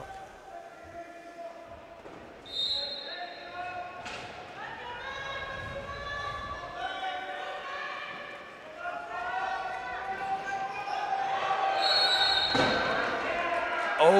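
Wheelchair rugby play on a wooden sports-hall court: wheelchair tyres squeaking on the floor and chairs knocking together. Two short referee's whistle blasts sound, one about two and a half seconds in and one near the end, the second stopping play for a contested ball.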